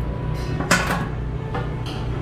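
Stainless-steel roll-top chafing dish lid being slid shut, with a short loud rush and clatter a little before the middle. Background music plays under it.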